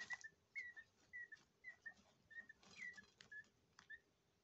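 A peafowl chick's soft whistled peeps: short, quiet calls repeated about twice a second, some rising then dropping in pitch.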